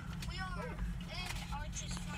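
Pickup truck engine idling: a steady low hum inside the cab, with faint voices over it.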